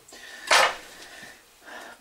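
Small kitchen knife cutting a shallow lengthwise score in the skin of a Golden apple: one short scrape about half a second in, then a fainter one near the end.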